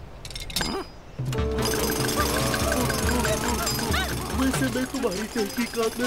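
Jackhammer sound effect starting about a second and a half in, with a steady pulsing rattle, as it is used on a jug of frozen lemonade; light music plays over it.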